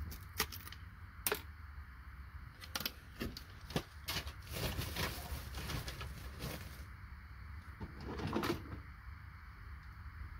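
Sharp clicks of IC chips being pried off a circuit board and dropping into a plastic tub, then a couple of seconds of handling noise in the middle. A bird calls.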